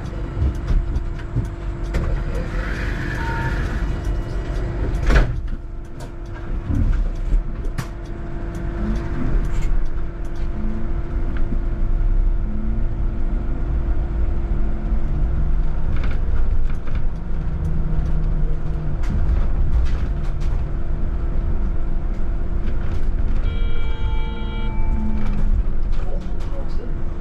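Cabin noise of a VDL Citea electric bus on the move: steady road and tyre rumble with a constant hum, scattered rattles and a sharper knock about five seconds in. A short electronic tone sounds once near the end.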